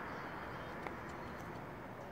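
Faint, steady rolling rumble of longboard wheels on asphalt, fading a little, with one light click a little under a second in.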